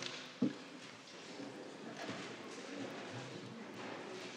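Quiet room tone in a council chamber, with faint, indistinct background murmur and one brief sound about half a second in.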